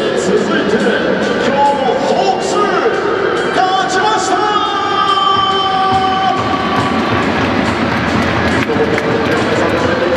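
Music playing over a baseball stadium's public address, mixed with crowd noise and voices in the stands, loud and continuous; held musical notes stand out through the middle.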